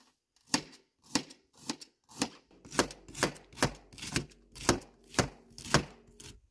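Knife slicing through a head of red cabbage onto a fluted metal tray, about two cuts a second, each a sharp stroke, starting about half a second in.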